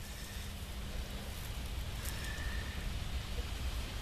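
Faint rustling and crumbling of moist worm compost being dug out and lifted by hand, over a steady low rumble.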